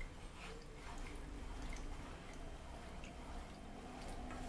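A wooden spatula stirs flour into milk and egg yolks in a saucepan: faint wet stirring with a few light clicks against the pan.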